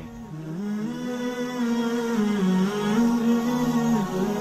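Slow background music closing the video: a single melodic line of long held notes stepping up and down in pitch, swelling in level over the first couple of seconds.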